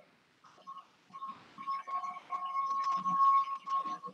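Whiteboard marker squeaking as lines are drawn on the board: a high squeal in several stretches, with the longest and loudest stretch near the end.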